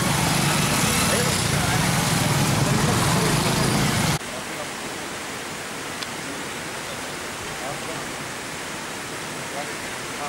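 Several small motorcycles running as they ride slowly past, with a low engine hum under a crowd's voices. About four seconds in the sound cuts off suddenly to a quieter, steady outdoor hiss with faint voices.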